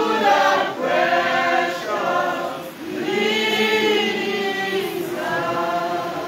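Church congregation singing together, unaccompanied or nearly so, in short phrases with one long held note through the middle.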